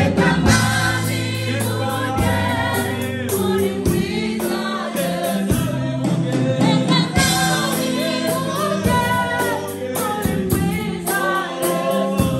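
Gospel worship singing: a woman leads on a microphone with a group of singers joining in. Steady low accompanying notes and frequent percussive hits run underneath.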